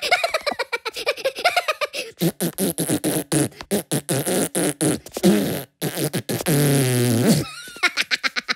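Cartoon Minion voices blowing rapid sputtering raspberries and fart noises mixed with squeaky gibberish. A longer drawn-out held sound near the end drops in pitch as it stops.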